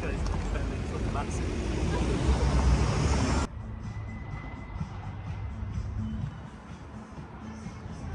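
Town-centre street traffic noise: vehicles running and passing, with a steady low rumble. About three and a half seconds in, the sound drops suddenly to a quieter, muffled hum.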